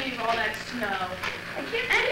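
Young women's voices talking, with no clear words, in shifting high voices that may include laughter.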